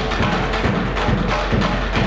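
Percussion ensemble playing live: many struck drums and percussion in a fast, driving rhythm, with low drum strokes about four times a second.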